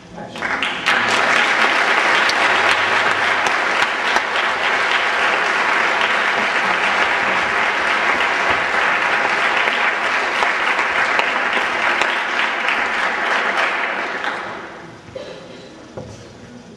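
A group of people applauding steadily; the clapping starts about half a second in and dies away about a second before the end.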